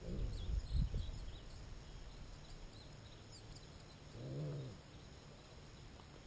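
Faint high chirping of small birds throughout, with a few low thumps in the first second and one short, low, pitched animal call, grunt-like, about four seconds in.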